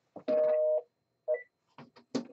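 Telephone busy signal from a phone: a two-tone beep lasting about half a second, repeating about once a second. A short higher beep follows, then a few sharp clicks near the end.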